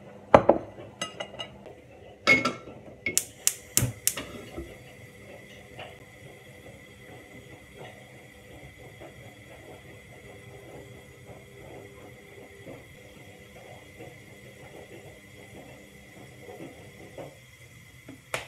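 Chopsticks and a frying pan clinking against a ceramic bowl as pasta is served: a run of sharp clinks and knocks over the first four seconds or so. After that, only a steady low kitchen background with occasional soft taps.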